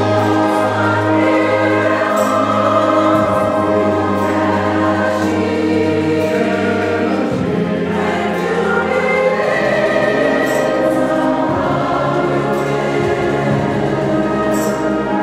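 A mixed choir singing with an orchestra accompanying, in long held chords over a bass line that moves every few seconds.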